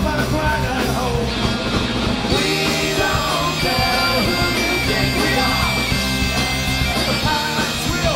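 Punk band playing live: electric guitars, bass and drums, with bagpipes and vocals.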